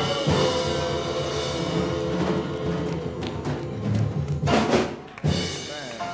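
Church band of keyboard and drum kit playing on after the choir's gospel song: sustained keyboard chords over drum strokes, with a loud cymbal crash about four and a half seconds in.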